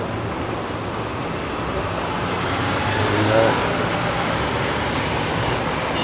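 City road traffic: motor vehicles running and idling around an intersection, a steady noisy rumble with a low engine hum that grows a little louder partway through.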